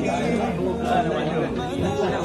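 Several people talking at once, an unclear chatter of voices.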